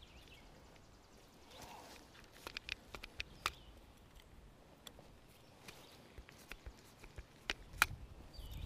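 Grease gun being worked on a finish mower's caster and spindle grease zerks: faint scattered clicks and small knocks of the gun and its coupler, with a cluster a few seconds in and two sharper clicks near the end.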